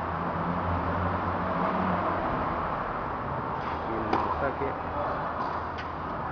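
Steady low hum and room noise of a large indoor tennis hall. A tennis ball is struck by a racket around four seconds in and again near the end, with a brief voice around four seconds in.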